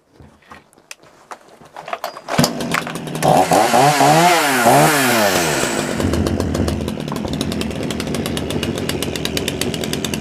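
AL-KO BKS 1316 petrol chainsaw's two-stroke engine: a few clicks, then it starts about two seconds in, is revved up and down a few times, and settles to a steady idle.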